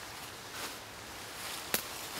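Faint outdoor background hiss, with a single sharp click near the end.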